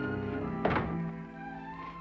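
Orchestral background music holding sustained chords, with a single sharp thunk about two-thirds of a second in, the loudest moment. After it the music thins out and grows quieter.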